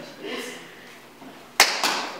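Step-routine body percussion: two sharp strikes about a quarter second apart near the end, after a faint voice early on.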